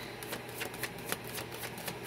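A tarot deck being shuffled by hand: a quick, even run of light card clicks, several a second.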